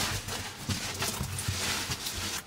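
A caver's boots and overalls knocking and scraping against the rock while squeezing through a tight cave passage: a series of dull knocks over rustling.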